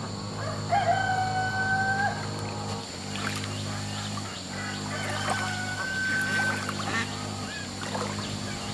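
A rooster crowing twice: a long, level call about a second in and another in the second half. Between the calls there are a few light knocks, over a steady high whine.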